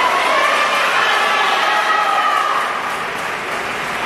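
Crowd noise in a sports hall: many spectators' voices talking and calling out together, with no single sound standing out, easing a little near the end.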